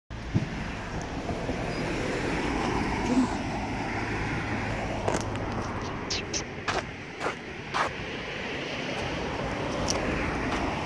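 Steady outdoor background noise of wind and distant road traffic, with a few short, sharp noises between about five and eight seconds in.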